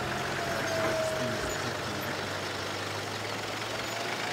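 A vehicle driving along an unpaved dirt road: steady road noise with a low engine hum.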